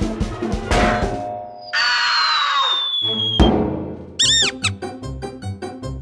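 Cartoon background music with slapstick sound effects: a long falling whistle, a thunk about halfway through, then a few quick squeaky boings and a fast run of ticks near the end.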